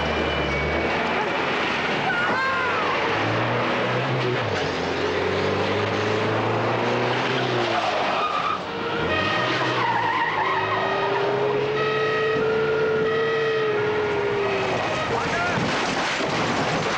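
Car engines revving hard and tyres squealing through skids in a film car-chase soundtrack, with pitch rising and falling as the cars accelerate and slide. A run of held high tones sounds in the middle.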